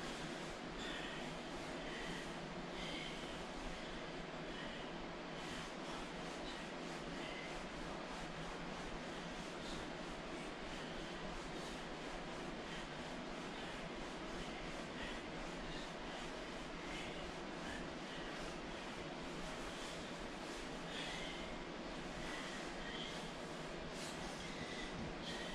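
A man breathing hard from the exertion of a bodyweight workout, over a steady background hiss.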